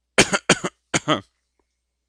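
A man coughing three times in quick succession, short sharp coughs, the third a little longer.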